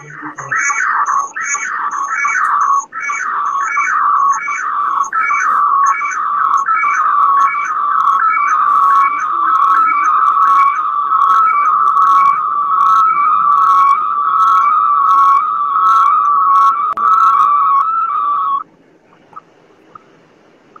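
A loud whistling tone that begins as a quick series of falling chirps, about two a second, then settles into a steady warble between two close pitches. It cuts off suddenly near the end.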